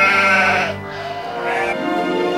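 A goat bleating twice, the first call longer and louder than the second, over background music.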